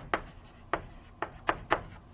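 Chalk writing on a blackboard: about half a dozen sharp, unevenly spaced taps and short strokes as words are chalked up.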